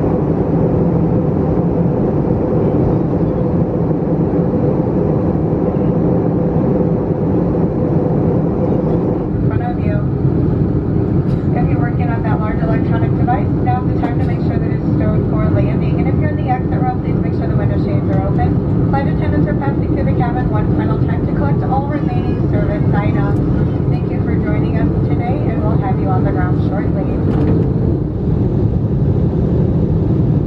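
Airbus A321 cabin noise in flight: a steady drone of engines and airflow, with a few held tones in it. From about ten seconds in until near the end, a voice talks over it.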